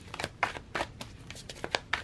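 A tarot deck being shuffled by hand: a quick, uneven run of card flicks and rustles, several a second.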